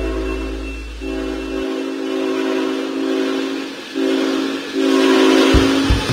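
Multi-chime air horn of an approaching locomotive sounding four blasts, two long then two short, with the rumble of the train growing beneath the last of them.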